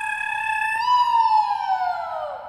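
Comic falling-whistle sound effect: a held whistle tone that, about a second in, slides steadily downward in pitch and fades.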